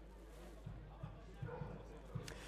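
Faint football-ground ambience: distant voices and a few soft low thumps over a steady low hum.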